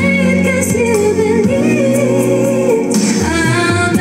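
A woman singing karaoke into a handheld microphone over backing music, holding long, slightly wavering notes, with the line changing about three seconds in.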